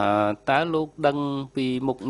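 A man speaking in slow, evenly paced syllables into a microphone.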